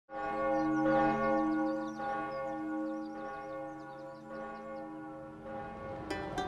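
Church bells tolling, a new strike about once a second, each left to ring on over the last.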